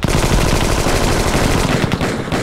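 Automatic rifle fire from several guns at once: a dense, unbroken volley that starts abruptly and runs loud throughout.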